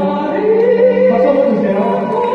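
A soprano singing a slow, sustained melodic line into a microphone, amplified through the hall's speakers, over a held accompaniment note.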